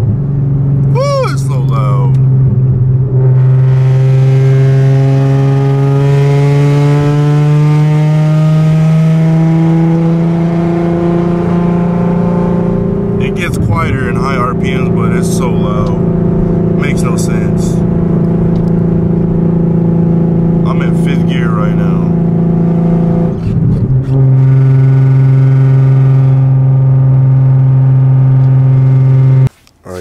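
Nissan 350Z's 3.5-litre V6 droning loudly through the cabin at freeway cruise, its pitch creeping up slowly and then stepping louder about 24 seconds in. The exhaust is open at the mid pipe, its rear section broken off at the V-band. The drone cuts off suddenly just before the end.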